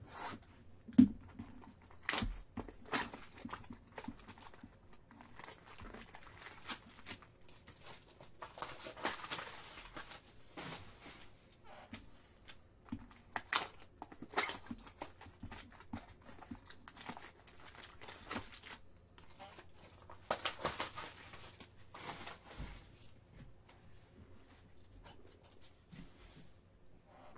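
Shrink-wrap on a trading-card hobby box being cut with a folding knife and torn off, with plastic crinkling and card packs rustling as they are handled. There is a sharp click about a second in, and longer stretches of tearing around nine and twenty-one seconds in.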